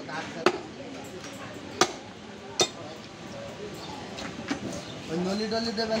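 A butcher's cleaver chopping beef on a wooden chopping block: three sharp chops about a second apart in the first three seconds.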